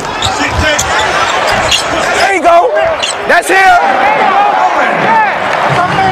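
Live NBA game sound on the court: a basketball bouncing and a few sharp knocks, with short squeaks and players' shouts over steady arena noise.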